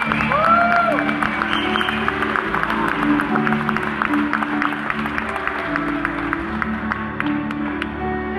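A string orchestra holds soft, sustained low chords as a slow song opens. Scattered audience applause and a cheer ride over it, mostly in the first seconds.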